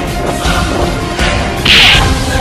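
Fight-scene sound effects over a music bed: a short whoosh about half a second in and a louder, sharper swish near the end, like a blow or kick cutting the air.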